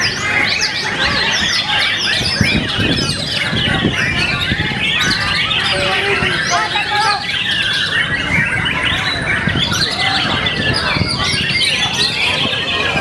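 Many white-rumped shamas singing at once, a dense, unbroken tangle of whistles, trills and chattering calls.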